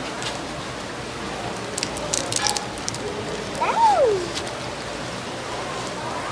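Water running steadily through a gem-mining sluice. About two seconds in comes a quick cluster of clicks and crinkles as rough stones are handled into a plastic bag. A short voice sound falling in pitch, the loudest thing, comes about four seconds in.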